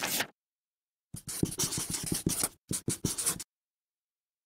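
Writing sound effect of a pen scratching on paper: a brief swish, then quick scratchy strokes from about a second in, with a short break, stopping about three and a half seconds in.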